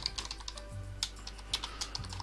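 Typing on a computer keyboard: a run of irregularly spaced keystroke clicks over a steady low hum.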